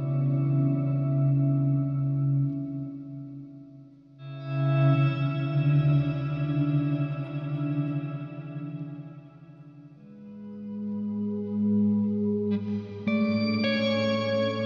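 Electric guitar played through reverb and modulation pedals: long ringing chords that swell and fade, a new chord about four seconds in and another near ten seconds, then quicker picked notes near the end.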